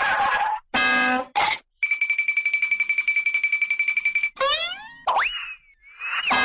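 A run of cartoon-style sound effects: a few short pitched notes, then a steady high ringing tone that pulses rapidly for about two and a half seconds, then quick sliding whistle glides, rising and falling, near the end.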